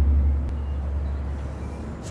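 A low, deep rumble fading away: the dying tail of an orchestral timpani sting, sinking into a steady low hum.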